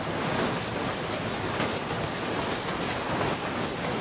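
Recycling sorting-plant machinery running: conveyor belts and sorting equipment with a steady, dense clatter and rattle of packaging waste moving along them.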